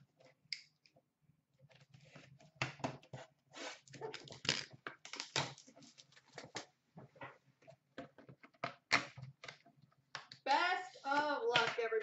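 Cardboard hockey card box being opened by hand and a metal tin slid out of it: a run of short crackles, scrapes and taps. A voice starts speaking near the end.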